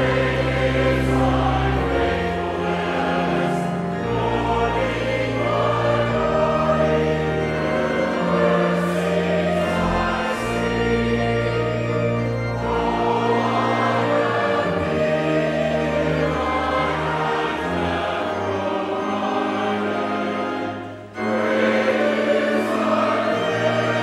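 Choir and congregation singing a hymn together, over instrumental accompaniment with long held bass notes. There is a brief break between phrases near the end.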